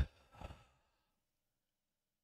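A man's sigh into a close microphone: a sharp breathy exhale right at the start, then a smaller breath about half a second in.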